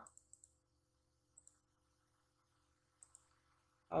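Faint clicks of a computer mouse: a few soft clicks just after the start, a single one about a second and a half in, and a small group around three seconds, over a faint steady hum.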